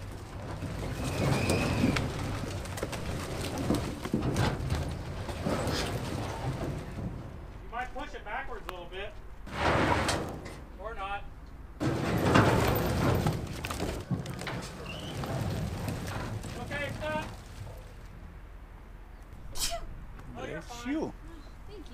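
Firewood logs sliding and tumbling off the raised bed of a dump trailer onto a woodpile, in several loud rushes of clattering wood. A few short wavering calls sound in between.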